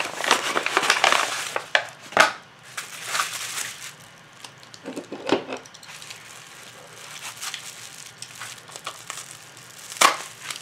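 Paper padded mailer and bubble wrap crinkling and rustling as a bubble-wrapped package is handled and pulled out, busiest in the first two seconds, with a few sharper crackles about five seconds in.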